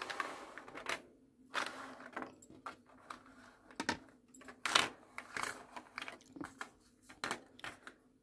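Small plastic zip bags of diamond painting drills being slid, shuffled and picked up on a wooden tabletop: irregular light clicks and taps, with short bursts of plastic crinkling.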